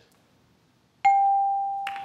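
Game-show answer-reveal ding: a single bell-like tone about a second in that rings out and slowly fades, the cue that the answer has scored points on the board.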